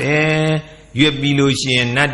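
A man's voice reciting in a chanting cadence, with long held tones on a steady pitch and a short pause a little after half a second in.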